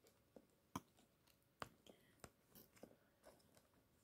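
Near silence with faint, scattered light clicks and taps as long metal tweezers arrange an artificial plant in a plastic enclosure.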